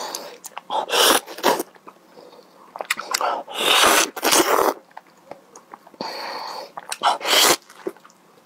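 Close-miked slurping and sucking bites of soft, juicy ripe mango flesh, in several loud, irregular bursts with quieter wet mouth sounds between.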